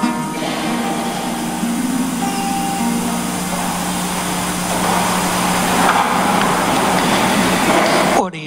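The close of a hymn sung with acoustic guitar. The voices stop just after the start, leaving a single steady low note held on, under a hiss that grows louder in the second half.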